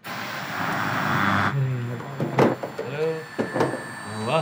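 Screen static: a hiss of white noise that starts abruptly and holds for about a second and a half, then sinks under voices.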